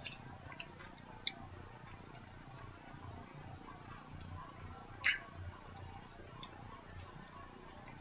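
Quiet room tone with a few faint, scattered clicks, a sharp one about a second in and the loudest at about five seconds.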